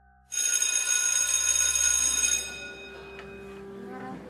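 School bell ringing loudly, starting suddenly and holding for about two seconds before it dies away.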